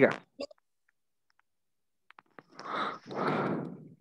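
Video-call audio: the tail of a spoken word, a few faint clicks, then a gap of dead silence where the call's noise gate cuts in. About two and a half seconds in comes roughly a second of breathy, unpitched noise, a breath or exhale close to a participant's microphone.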